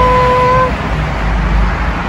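A high voice holds a cheer of "hooray" at one steady pitch, cutting off under a second in. Then comes steady outdoor rumble and hiss with no distinct event.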